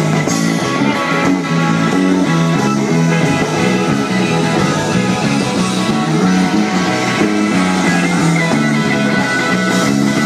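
Live rockabilly band playing loudly without singing: electric guitar over a steady, stepping bass line.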